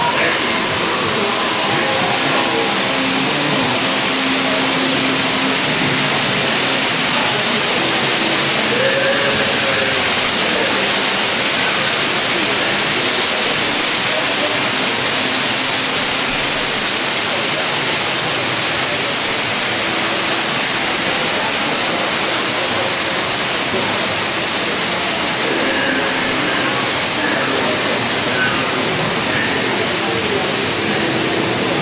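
Steady rushing of falling water in the water ride's dark cave grotto, with faint voices underneath.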